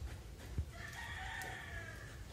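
A single drawn-out animal call, about a second long, starting a little after half a second in, just after a short low thump.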